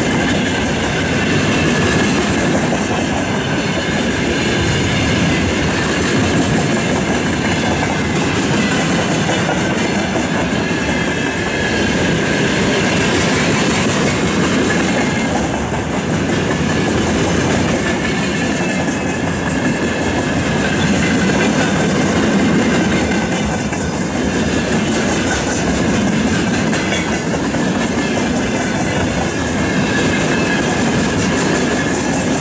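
Freight train of rail tank cars rolling past, its steel wheels running over the rails in a steady, loud clatter with a thin high ring.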